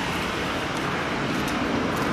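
Steady, even noise of traffic on a snow-covered street.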